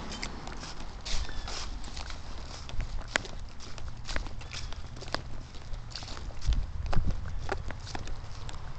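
Handling noise from a hand-held phone: irregular clicks and knocks over a low rumble as the phone is moved about.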